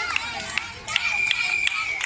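A crowd of children shouting and calling, with scattered hand claps, during a game of musical chairs. About halfway through a steady high-pitched tone comes in and is held for about a second.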